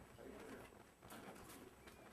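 Near silence: room tone with a faint low murmur.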